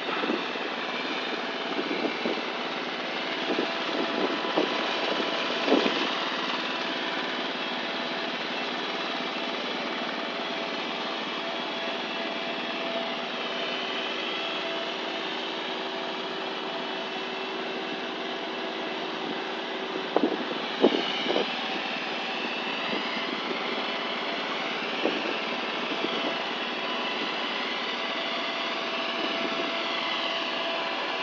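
A steady mechanical drone, like a small engine or motor running, with a held tone joining in through the middle. A few brief knocks come about twenty seconds in.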